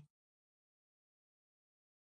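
Near silence: a digital silent gap, with only the last trailing off of a spoken word at the very start.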